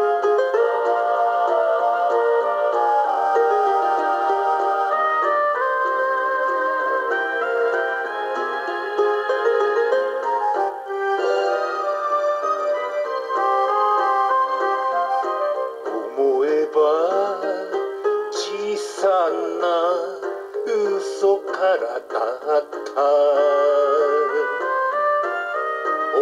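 Karaoke backing track playing the instrumental intro of a kayōkyoku (Japanese pop ballad) song, with sustained chords. From a little past halfway, a lead melody line wavers with vibrato.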